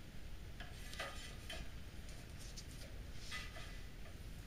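Faint clicks and light scrapes of small plastic and metal computer parts being handled by hand, a few scattered, with a cluster about a second in and another near three seconds in.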